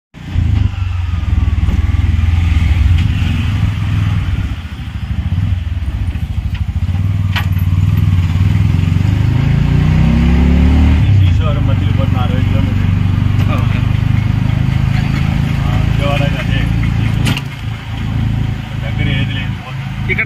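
Auto-rickshaw's small engine running under the passenger seat, heard from inside the open cabin, its pitch rising as it accelerates about eight to eleven seconds in.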